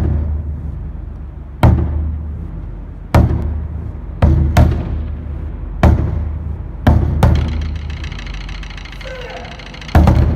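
An ensemble of Japanese taiko drums struck together in single heavy unison hits, each a deep boom that dies away slowly. About eight hits come at an uneven pace, two of them in quick pairs, with a longer pause near the end before a final hit.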